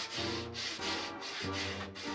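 Hand-sanding a strip of wood: sandpaper rubbed back and forth along the grain in repeated strokes, over soft background guitar music.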